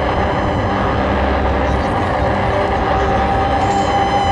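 Live electronic noise music from synthesizers: a loud, dense, steady wash of noise with many held drone tones and a low rumble that comes and goes. A higher held tone comes in near the end.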